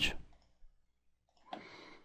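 A few faint computer mouse clicks in a quiet room, as an option is picked and confirmed in an on-screen dialog.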